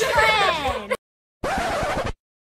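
Girls laughing and talking, cut off abruptly about a second in; after a brief dead silence, a record-scratch sound effect lasting under a second.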